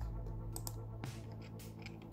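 A few faint computer mouse clicks over a low, steady hum.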